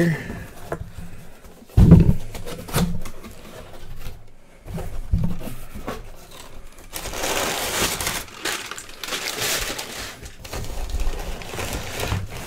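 Cardboard box being handled and opened, with a few knocks against the cardboard, then several seconds of rustling crumpled kraft packing paper as it is pulled aside.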